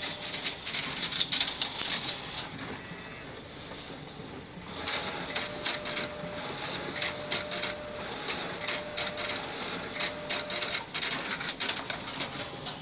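Ricoh copier's finisher running, feeding and ejecting paper with rapid clicking and rustling over a steady mechanical hiss. It eases off about three seconds in, then grows busier and louder from about five seconds, with a faint motor whine coming and going.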